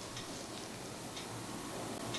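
Quiet room tone with a few faint ticks, in a pause in speech.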